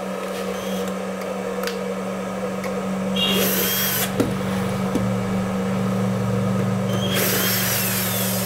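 Cooling fan of a 10-FET electric fish-shocker running with a steady hum; the fan spins but the unit gives no electrical output. A louder rushing hiss comes in about three seconds in and again near the end.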